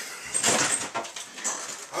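Rustling and handling noise at close range as a person reaches past the microphone and rummages for an object, in two louder surges.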